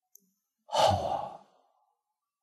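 A man's heavy sigh close to the microphone, about a second long, loudest at its start and trailing off, after a faint tick.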